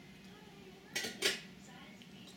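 Two sharp clacks, about a quarter second apart, a second in.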